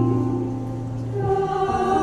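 Mixed choir singing a hymn in parts, holding sustained chords that change about halfway through.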